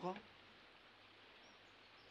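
Near silence after a spoken word ends: a low background hiss with a few faint, high-pitched chirps in the second half.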